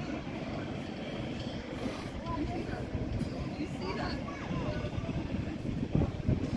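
City street ambience: a steady low rumble of traffic with indistinct chatter of people around.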